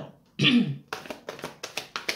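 A short vocal sound from the reader about half a second in, then a deck of tarot cards being shuffled by hand: quick crisp card slaps, about five a second.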